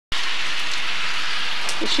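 Hail falling steadily in a hailstorm, a dense, even patter. A voice starts right at the end.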